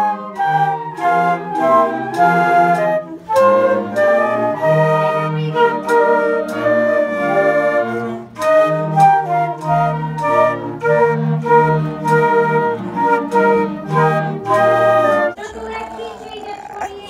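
Two flutes playing a melody together, with a lower part sounding beneath the tune; the playing stops about a second before the end.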